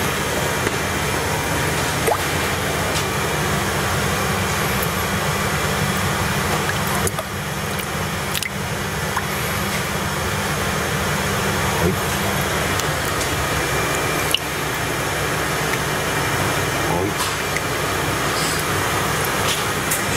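Water sloshing and dripping as hands scoop a small koi out of a plastic viewing bowl and hold it up dripping, over a steady background hiss and hum.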